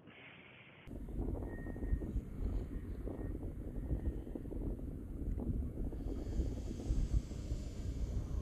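Wind blowing across the microphone outdoors: a low, uneven rumbling noise that starts suddenly about a second in.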